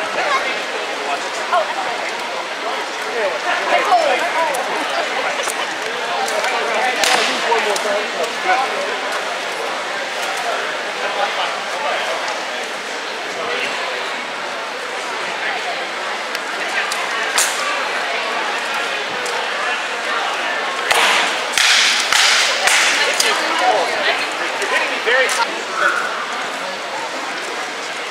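Armoured combat with rattan swords: sharp cracks of blows striking shields and armour, a few scattered and then a quick flurry about three-quarters of the way through. A steady murmur of crowd chatter echoes in a large hall throughout.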